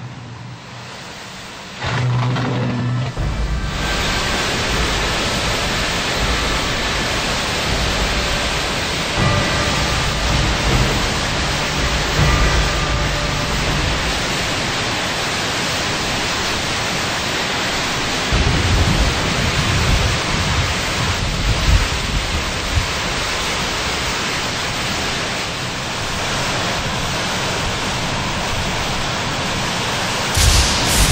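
Hurricane-force wind and driving rain: a steady, loud rush of noise that sets in about two seconds in, with gusts buffeting the microphone in surging low rumbles, heaviest in bursts around the middle and the second half.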